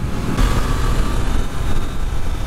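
Triumph Trident 660 three-cylinder motorcycle cruising steadily, its engine mixed with a constant rush of wind noise over the rider's microphone.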